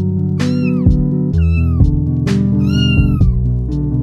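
Kitten meowing three times, each call arching up and down in pitch, the last one longest, over background music.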